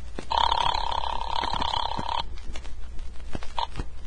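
Telephone ringing sound effect from a 1940s radio drama: one buzzy ring about two seconds long, starting just after the beginning. It is the call ringing through to the far end before it is answered.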